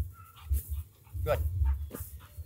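A German shorthaired pointer whining briefly, a short high-pitched sound, excited by the training bumper. A low rumble runs underneath.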